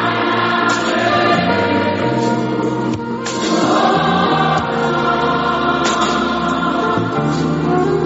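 Choir singing a gospel praise song, many voices together, steady and loud.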